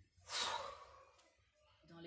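A woman's long, forceful breath out, loud at first and fading over about a second. It is the release of a breath held on an inhale during a qi gong exercise.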